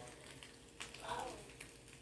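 Faint crackling sizzle of food frying in a pan, with a short faint voice about a second in.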